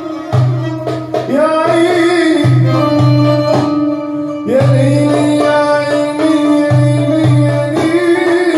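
Live Middle Eastern music: a violin plays a sliding, ornamented melody over deep ringing strokes of a hand drum. The drum drops out briefly about halfway through, then comes back in.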